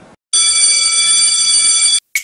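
An electric bell ringing loudly and steadily on several high tones. It starts about a third of a second in and cuts off abruptly at the end.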